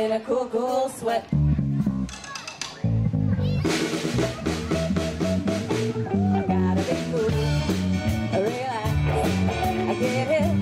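Live rock band playing with electric guitars, bass guitar and drum kit. The band thins out briefly about two seconds in, then the full band with drums and cymbals comes back in.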